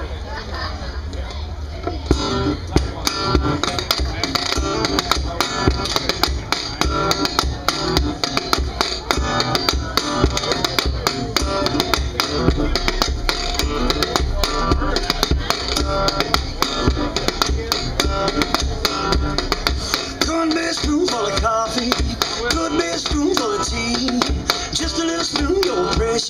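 Resonator guitar playing a blues intro, with a steady beat of sharp percussive clicks from about two seconds in.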